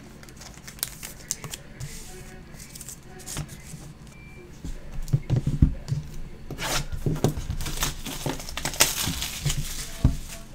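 Plastic shrink wrap crinkling and tearing as it is worked off a sealed Panini Impeccable Basketball card box, with knocks of the box being handled on the table. After a few quiet seconds with only scattered clicks, the crackling starts about halfway in and grows dense and loud.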